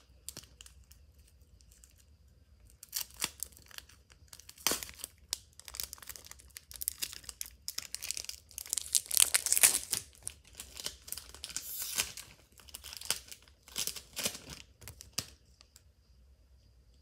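Foil wrapper of a Pokémon TCG Fusion Strike booster pack being torn open and crinkled by hand: an irregular run of sharp rips and crackles that starts a couple of seconds in and stops just before the end.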